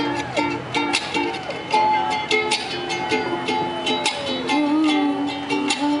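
Ukulele strummed in a steady rhythm, playing the intro to a pop song. A woman's voice comes in singing at the very end.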